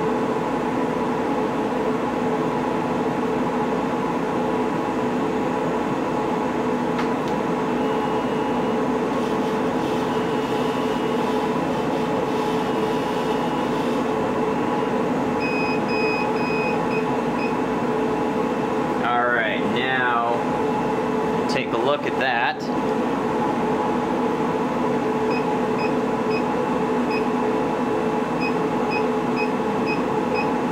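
Steady machine drone of a CO2 laser engraver setup running a test burn, dominated by the water chiller, which is kind of loud, with the air assist and exhaust fan. Faint short beeping tones come and go, and two quick gliding whirs come about two-thirds of the way through as the laser head and rotary move.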